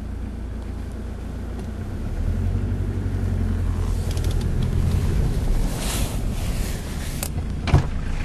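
Car engine running at low speed, heard from inside the cabin as a steady low rumble that grows a little louder about two seconds in. A couple of sharp knocks come near the end.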